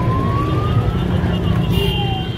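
Street traffic in a procession: a steady rumble of car and motorcycle engines, with a siren making one slow wail that rises to about a second in and then falls.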